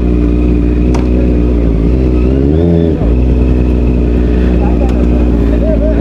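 Motorcycle engine idling steadily, with a brief blip of the throttle about two and a half seconds in.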